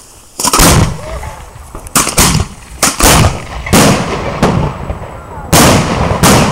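3-inch aerial firework shell fired from a mortar tube: a loud launch bang about half a second in, then a string of sharp bangs over the next few seconds, with a big burst in the sky near the end.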